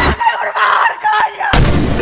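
Film-trailer sound effects: two sharp cracks about a second apart, with a woman crying out between them, then a sudden loud hit with deep bass about one and a half seconds in.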